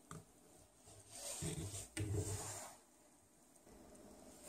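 Faint handling sounds of hands twisting plastic screw caps onto plastic bottles: soft rubbing and light knocks between about one and three seconds in, with one sharper knock near the middle.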